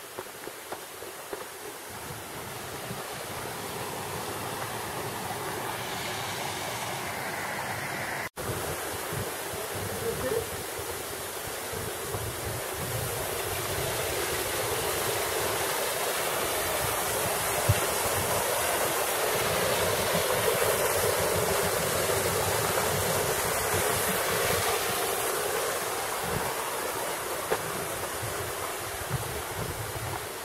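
Rushing water of a mountain stream tumbling over rocks in small cascades, a steady hiss that grows louder through the middle and eases toward the end, with a few light scuffs of footsteps on the dirt trail. The sound cuts out for an instant about eight seconds in.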